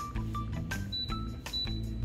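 Background music with a steady beat and short high melodic notes.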